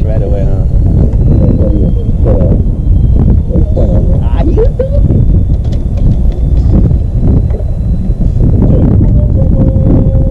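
Wind buffeting the microphone in a heavy, uneven rumble, with men's voices coming through it now and then without clear words. A steady tone starts near the end.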